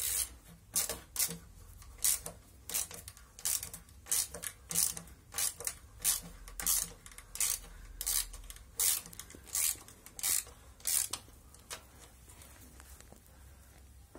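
Hand ratchet wrench clicking in short bursts, about one and a half a second, as it works stiff automatic-transmission oil pan bolts loose; the bursts stop a few seconds before the end.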